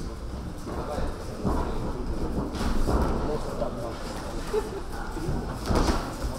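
Boxers' feet thudding and shuffling irregularly on the ring canvas, with gloves landing during an exchange, under the low voices of spectators in the gym hall.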